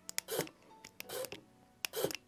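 Wheeltop EDS TX electronic road shifter buttons pressed close to the microphone: a string of short, tactile clicks at irregular intervals, some in quick pairs.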